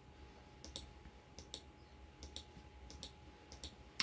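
Computer mouse clicking: faint sharp clicks in close pairs, about five pairs spread through these few seconds, as listing pages and photos are clicked through.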